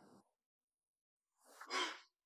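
Silence, then a woman's short sigh near the end.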